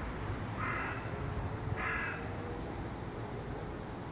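A bird gives two short calls about a second apart, over a low steady background rumble.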